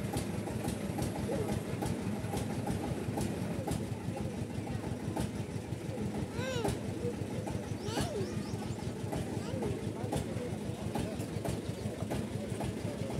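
Busy roadside background: a steady engine-like running noise with small clicks, background voices, and two short voice-like calls around the middle.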